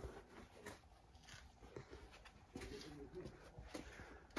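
Near silence: the room tone of a cluttered warehouse, with a few faint clicks and a faint pitched sound a little after halfway.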